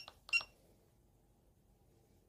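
PAX S80 card terminal giving two short high beeps about a third of a second apart as its cancel key is pressed after the self-test, bringing up the download menu.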